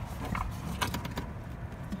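A hand brushing and pressing a loose rubber rain flap against the air conditioner frame of a camper: faint rustling with a few light clicks over a low rumble.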